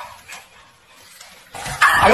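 Dogs barking, starting about a second and a half in and loudest near the end.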